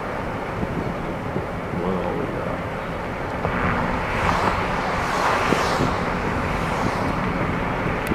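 Steady road and engine noise of a car driving along a city street, heard from inside the car, growing louder for a couple of seconds about halfway through.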